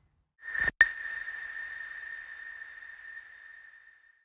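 Broadcaster's logo sting: a short rising whoosh, a sharp hit, then one high ringing tone that fades out over about three seconds.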